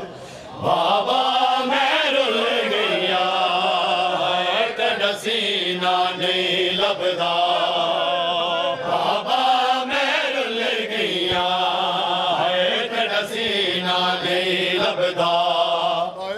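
A group of men chanting a Punjabi noha in unison through a microphone and loudspeakers, long held lines that swell and fall in pitch, with a brief pause for breath just after the start. Sharp short strokes, typical of matam (hands striking the chest), come in among the voices.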